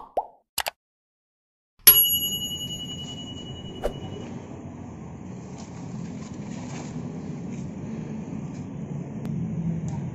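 Subscribe-button animation sound effects: a few quick pops, then a bright bell-like ding about two seconds in that rings out. After it, steady low outdoor background noise.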